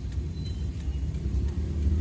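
Steady low vehicle rumble heard inside a van's cabin.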